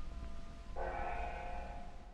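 Closing bars of a remastered 1920s–30s dance band recording: a few fading held notes, then a final full chord that comes in under a second in and is held. Under it runs the low steady hum of the old recording.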